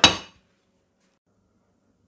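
A single metallic clink on a stainless steel stockpot, ringing briefly and dying away within half a second.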